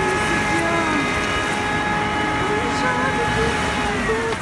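Steady rushing noise of hot water and steam pouring out of a burst pipe into the flooded street, with a car engine running in the water and a steady high whine through it.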